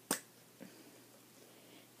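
A single sharp click of a plastic lipstick cap coming off its tube, followed by a fainter tap about half a second later, then near silence.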